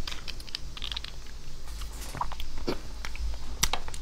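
Close-miked chewing of soft, jelly-like beef bone marrow: scattered wet mouth clicks and smacks, with a sharper click near the end.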